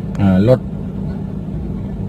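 Steady low engine and road drone heard from inside the cabin of a moving car, with a constant low hum.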